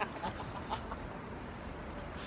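Four or five short, clipped vocal sounds from a person in quick succession during the first second, over steady street background noise.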